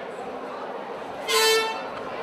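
A single short horn blast, about half a second long and loud over a murmuring crowd, signalling the start of the round.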